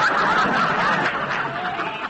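Studio audience laughing at a punchline, a full burst of laughter that tapers off in the second half.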